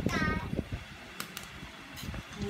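A voice for a moment at the start, then two light, sharp clicks close together, typical of chopsticks tapping on a dish during a meal, over quiet room noise.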